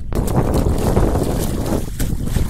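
Shallow muddy water splashing and sloshing as a barefoot person wades through it and grabs at a fish by hand, a dense, crackly splashing with a brief lull near the end.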